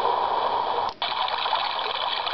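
Soothing Sounds digital alarm clock playing a recorded water-noise track through its small speaker, a steady rushing sound. About a second in it cuts out briefly as the sound button is pressed, and a different rushing track starts: the ocean setting giving way to the waterfall setting.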